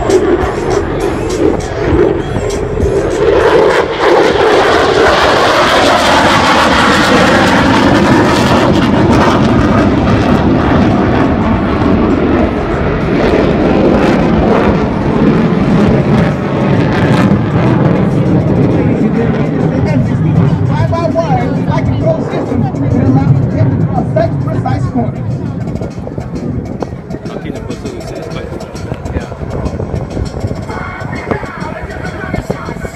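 Loud jet noise of an F-16 Fighting Falcon flying its display. The roar gains a strong hiss about three seconds in, stays heavy and lower-pitched through the middle, and eases off toward the end.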